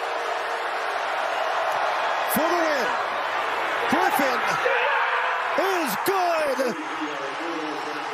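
Football stadium crowd noise with loud shouts and yells over it as a last-second field goal is kicked and goes through. The noise swells in the middle, with several sharp yells.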